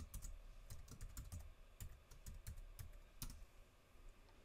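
Faint typing on a computer keyboard: a run of irregular keystrokes that stops about three and a half seconds in.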